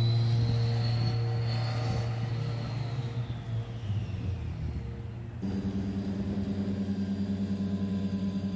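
Background music: a low sustained chord with a gong-like onset slowly fades, then a new chord with a quick, even pulse comes in about five and a half seconds in.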